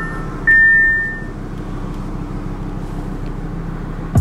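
Audi R8 V10 Plus's V10 engine running low and steady, heard inside the cabin, with a single high dashboard warning chime about half a second in that fades away. The instrument cluster is showing a replace-key-battery warning at the time.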